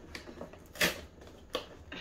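Fingers scraping and clicking against a cardboard box as its lid flap is picked open, a few short handling sounds over a quiet room, with a brief spoken "oh".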